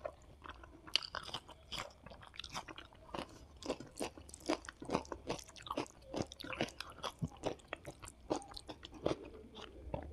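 Close-miked eating: chewing of rice and squid roast, mixed with the wet squishing and clicking of fingers mixing rice into gravy on a plate. Dense, irregular crackles and clicks run throughout.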